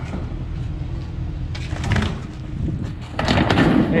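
A tall stacked sheet-metal dryer unit being slid off the back of a flatbed truck: a few knocks about halfway through, then a loud scraping crash near the end as it comes down upright on the pavement. A truck engine runs with a low rumble underneath.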